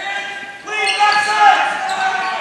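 A drawn-out raised voice calling out over basketball game sounds in a gym.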